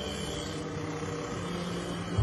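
Motor scooter engine running steadily as it rides through traffic, a continuous even hum.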